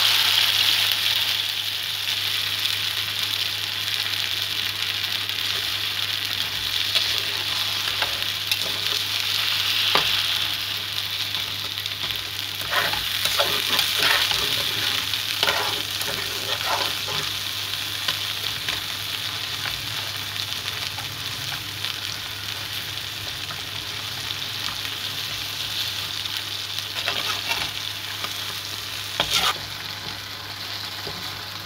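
Nishasta (wheat-starch) batter sizzling and bubbling in a hot pan. The sizzle is loudest at the start and slowly settles as the mixture cooks. A metal spatula scrapes and stirs against the pan in short runs around the middle and again near the end.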